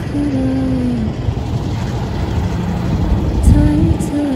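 Low city traffic rumble with wind buffeting the microphone, surging in a gust near the end. A short held voice-like tone comes in about a quarter second in and again just before the end.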